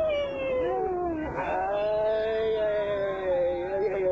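A person's long, drawn-out wailing cry with a sliding pitch: a shorter falling wail, then one long held call from about a second and a half in.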